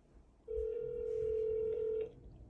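A phone call's ringback tone, heard through the smartphone's speaker: one steady ring starting about half a second in and lasting about a second and a half, the sign that the called line is ringing.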